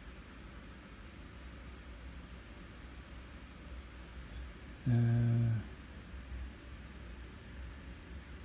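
A faint, steady low hum of room noise, broken once about five seconds in by a man's drawn-out hesitation sound, "uh".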